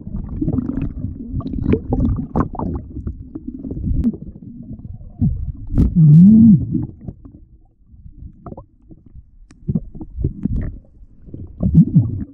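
Muffled underwater knocks, thumps and rumbling as a snorkeller swims and handles his gear along the seabed, heard through a camera underwater. About six seconds in there is a loud, brief, wavering low tone.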